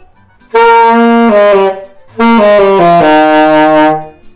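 Saxophone playing two short phrases of notes, each stepping down in pitch, the second ending on a long held low note. The keys are being pressed to change the pitch.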